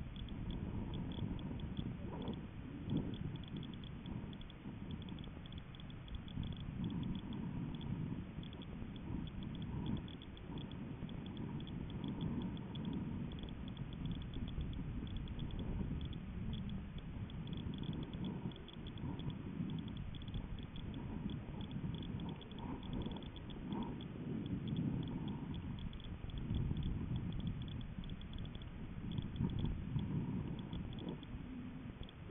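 Low, uneven rumbling that swells and fades without a steady rhythm, picked up by the microphone of a camera riding on a high-altitude balloon payload.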